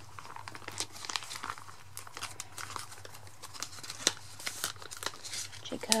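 Clear plastic binder pocket pages crinkling as photocards are slid into them by hand: a run of irregular crackles and rustles, with a sharper crackle about four seconds in.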